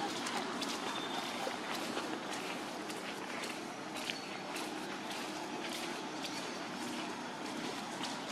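Footsteps on a dirt path over a steady outdoor background noise.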